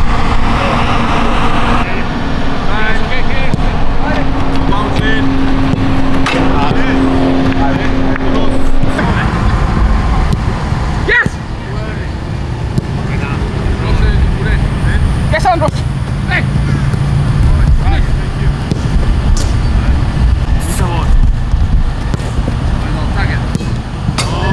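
Football training on a grass pitch: players' scattered shouts and calls and the knock of the ball being kicked, with one sharp kick about eleven seconds in, over a steady low rumble.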